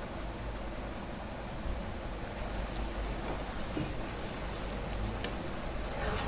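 Mutton pieces frying in masala in a kadhai: a steady sizzle, with a few light scrapes of a spatula against the pan.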